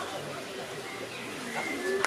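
A bird giving a short, low call early on, with fainter pitched sounds near the end.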